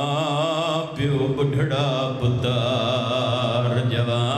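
A man's voice chanting a mourning recitation in long, melodic held notes that waver with vibrato, with a short break about a second in.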